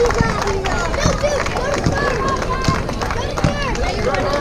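Overlapping chatter and calls from several voices at once, many of them high-pitched like children's, none clear enough to make out as words.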